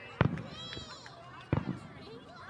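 Two loud firework bangs about a second and a half apart, over a crowd of people talking and calling out.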